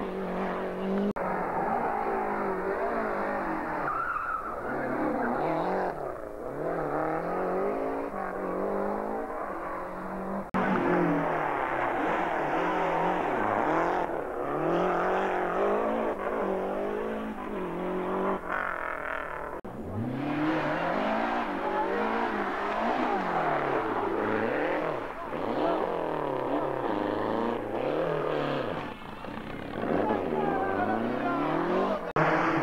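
Lancia Delta Group A rally cars' turbocharged two-litre four-cylinder engines revving hard as the cars pass, the pitch climbing and dropping again and again with gear changes and lifts. The sound breaks off abruptly about a second in, again about ten seconds in, and again about twenty seconds in, each time going straight into another car.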